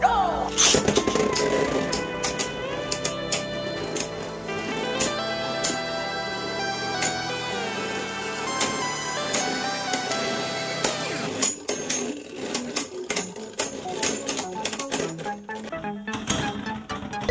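Background music, with two Beyblade Burst spinning tops launched into a plastic stadium and clashing: scattered sharp clicks and clacks of the tops hitting each other and the stadium wall, coming thick and fast in the last few seconds.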